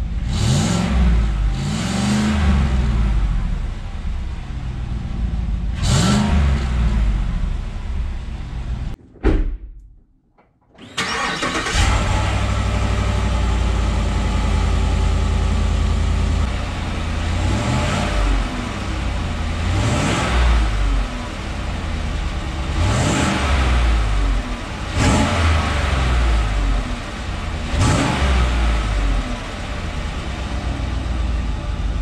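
GM pickup truck's engine idling through its stock exhaust, the spring-loaded displacement-on-demand exhaust valve still working as designed, with short throttle blips at idle. Three quick revs in the first few seconds, a brief drop-out about nine seconds in, then idling again with five more revs.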